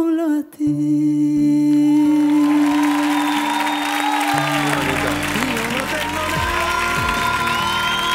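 A woman's last sung note, held with vibrato, ends about half a second in, leaving sustained chords from the backing music. From about two seconds in, audience applause and cheering swell over the chords and keep growing.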